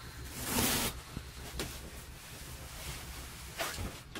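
Handling noise in a small camper: a short rustling swish about half a second in, a couple of light clicks, and another brief rustle near the end, as the fabric privacy curtain and sling bed are handled.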